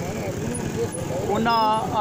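A man speaking, with voice strongest near the end, over a steady low rumble in the background.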